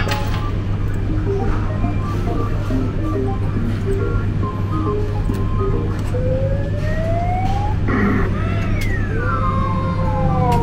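Claw machines' electronic music and game sounds: short beeping notes over a steady low hum, then a rising electronic sweep about six seconds in and falling sweeps near the end.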